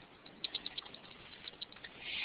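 Faint, irregular light clicks, roughly a dozen over about a second and a half, with no speech.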